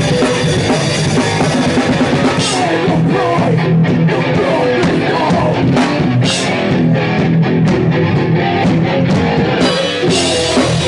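Hardcore punk band playing live: pounding drum kit and distorted electric guitar, loud and dense, heard from right beside the drums. From about three seconds in the drumming turns choppier, with sharp stop-start hits.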